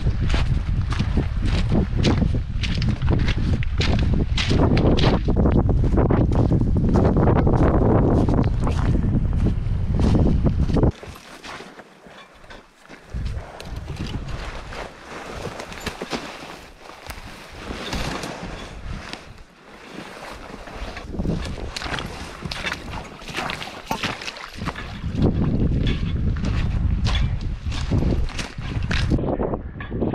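Wind buffeting the microphone, with footsteps crunching on a pebble beach. About eleven seconds in it drops abruptly to much quieter footsteps through wet brush. Near the end the wind noise rises again.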